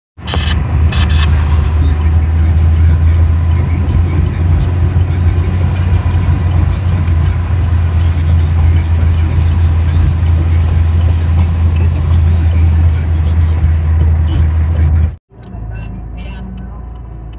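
Steady low rumble of a car's cabin while driving: road and engine noise heard from inside the moving car. It cuts off abruptly near the end.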